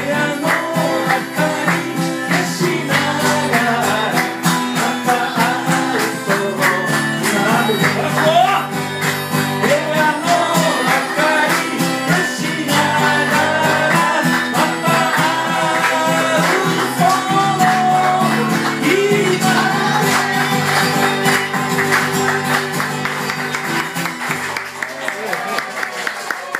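A man singing while strumming an acoustic guitar. The performance continues until it tapers off and grows quieter near the end as the song closes.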